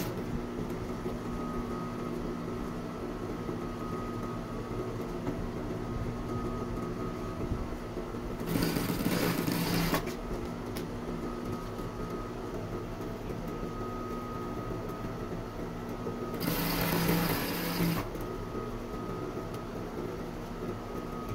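Industrial lockstitch sewing machine stitching down a folded fabric strip: its motor hums steadily, and the machine runs in two short stitching bursts, one about eight and a half seconds in and another about sixteen and a half seconds in, each lasting about a second and a half.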